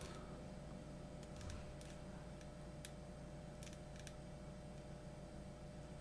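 Faint, scattered clicks of a computer mouse and keyboard, several spread over a few seconds, over a steady low background hum.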